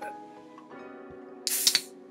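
A beer being opened right at the microphone: one short, loud hiss of escaping gas about one and a half seconds in, over quiet background music.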